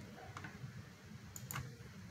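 A few faint clicks over quiet room tone: one about half a second in and two close together near the end.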